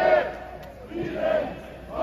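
Crowd of marchers chanting in unison, with loud shouted phrases coming in repeated bursts about once a second.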